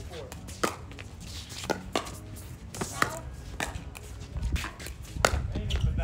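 Pickleball rally: paddles striking the hard plastic ball in a quick exchange, about seven sharp pops spaced irregularly half a second to a second apart.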